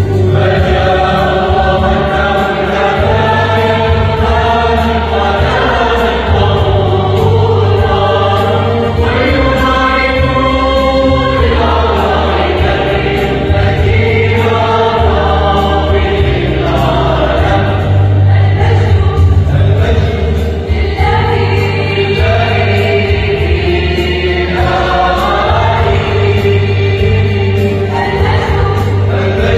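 Mixed choir of women and men singing a Christmas hymn in parts, sustained sung lines moving through the phrases without a break.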